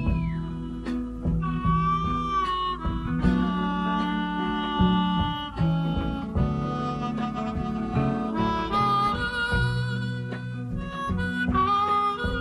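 Instrumental break in a country song: a harmonica plays a melody of held, bending notes over a nylon-string classical guitar accompaniment.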